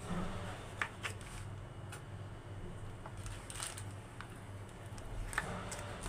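Knife drawn through a slab of soft homemade soap in a plastic-lined tray, with a few faint scrapes and sharp clicks as the blade meets the tray.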